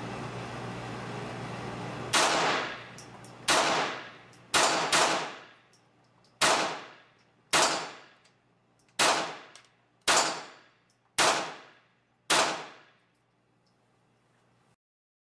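Ten shots from a Ruger Mark IV 22/45 Tactical .22 LR semi-automatic pistol with its compensator removed. The first comes about two seconds in and the rest follow roughly a second apart, two of them close together near the middle. Each sharp crack rings briefly off the walls of the indoor range.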